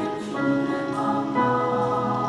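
Children's choir singing in harmony: held chords that change together about once a second.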